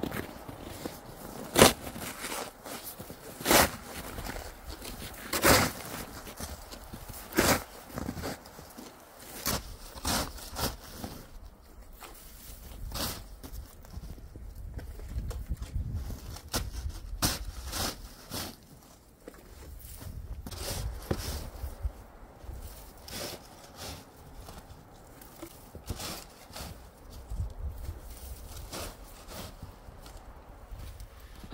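Snow shovel stabbing and scraping into deep snow with a crunchy bottom layer, a sharp crunch about every two seconds at first, then more irregular and fainter strokes, with footsteps crunching in the snow.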